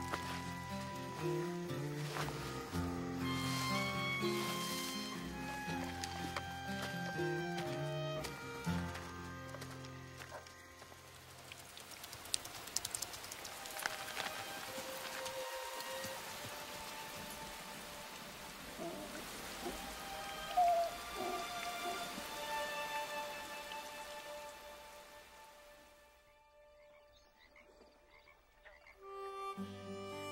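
Music for roughly the first ten seconds, then steady rain falling with frogs croaking now and then; the rain fades out a few seconds before the end.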